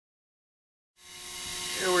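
Silence for about a second, then the steady whine and hiss of a Sherline mini lathe running, fading in as it turns a brass rod.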